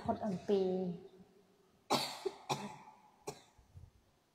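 A woman speaking briefly, then a person coughing about two seconds in, followed by a few shorter coughs or throat-clearing sounds.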